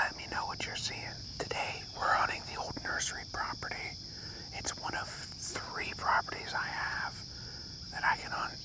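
A man whispering to the camera, speech only.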